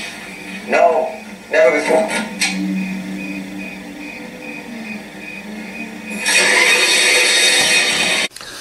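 Soundtrack of a TV drama clip. A few short spoken sounds come near the start, then a held low electronic drone with a high beep pulsing about four times a second, then a loud hiss that comes in about six seconds in.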